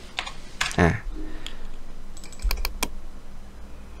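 Computer keyboard keystrokes: a quick cluster of about six sharp taps a couple of seconds in.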